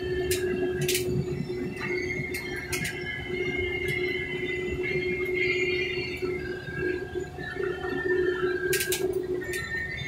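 Combine harvester running, heard from inside its cab: a steady drone with high squealing tones that shift in pitch, and scattered clicks and rattles.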